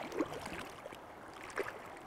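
Faint, soft sound of shallow stream water, with small splashes just after the start and about a second and a half in as a hooked rainbow trout is held in the water by hand.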